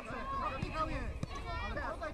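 Overlapping voices of children and adult spectators calling and chattering around a youth football pitch, with one brief knock past the middle.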